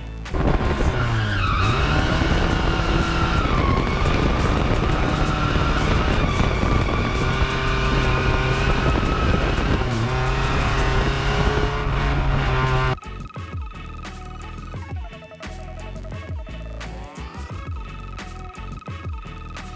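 Rear-wheel-drive drift car sliding through a corner: the engine is held at high revs, its pitch rising and dipping, while the tyres squeal. About thirteen seconds in the car sound cuts off and only background music remains.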